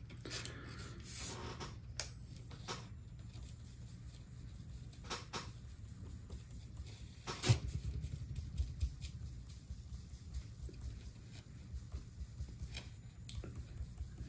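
Faint scattered clicks and taps as a small metal mesh sieve of static grass, mounted on a bug-zapper static grass applicator, is shaken over the board. One sharper click comes about seven and a half seconds in.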